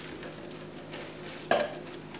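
Faint handling noise, then a single light knock about one and a half seconds in as a red plastic Solo cup is set down on the countertop.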